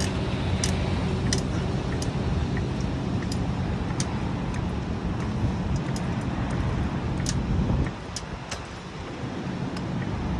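A hydraulic floor jack is being pumped to lift a van, giving scattered sharp metallic clicks about every half second to one second. Under them runs a steady low vehicle-engine hum that drops away about eight seconds in.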